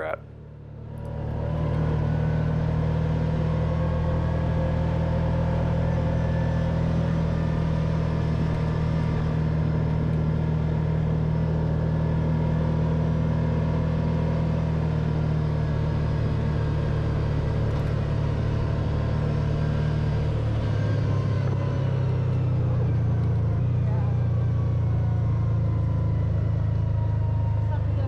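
Kawasaki Teryx4 side-by-side's V-twin engine running steadily as it drives along a dirt trail, heard from the driver's seat, swelling in over the first two seconds. About two-thirds of the way through, the engine note drops a little lower and holds.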